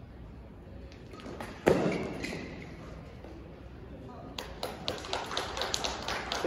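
A badminton rally ends with one sharp smack of a racket on the shuttlecock, about two seconds in, ringing briefly in a large hall. Scattered clapping follows near the end.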